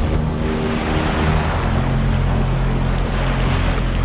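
A quiet breakdown in a hardstyle track: sustained low synth chords under a steady rushing wash of noise.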